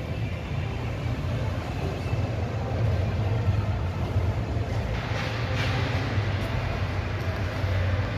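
A steady low rumble of background noise with no speech, with a faint hiss swelling briefly about five seconds in.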